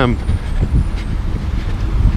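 City street traffic: motor vehicles running close by, heard as a steady low rumble.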